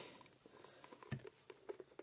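Faint, scattered small clicks and rubbing from a Dollfie Dream's soft vinyl leg being wiggled back and forth in its hip joint to seat the leg peg.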